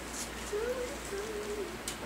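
A soft hum in two short parts, the second a little lower and longer, then a single sharp click near the end.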